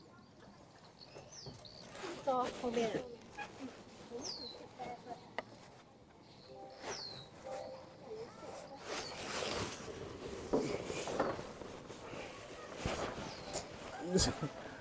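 A bird calling outdoors, repeating a short falling whistle every two to three seconds, with faint voices between the calls.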